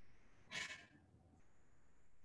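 Near silence, broken about half a second in by one short breath out close to the microphone.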